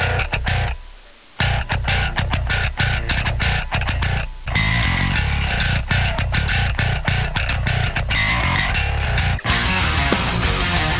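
Electric bass guitar, a Yamaha with gold hardware, played to heavy metal music, fed straight from the recording line with hiss and heavy limiting. It starts abruptly, drops away briefly about a second in, then runs on steadily.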